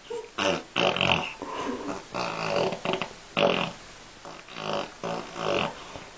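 A baby vocalizing in a string of short, pitched noises with brief pauses between them.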